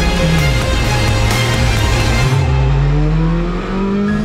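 Hyundai i20 R5 rally car's 1.6-litre turbocharged four-cylinder running through a bend on a tarmac stage, under background music. The engine note drops, then rises steadily over the last second and a half as the car accelerates away.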